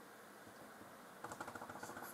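Near silence, then about a second in a run of faint, quick clicks from the PowerBook G4 laptop's keys being pressed as the muted sound is turned back on.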